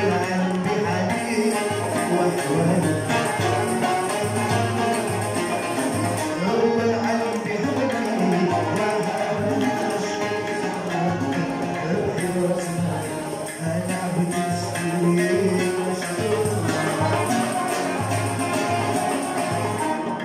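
Live acoustic ensemble of oud, banjos and guitar playing a melody over a steady hand-drummed beat on frame drums.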